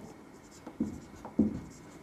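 Marker pen writing on a whiteboard, a few short separate strokes as words are written out.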